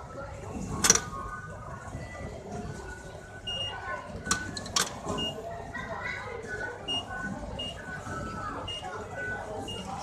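Metro station concourse ambience: background voices with short high beeps at irregular intervals. Sharp clicks come about a second in and twice around the middle.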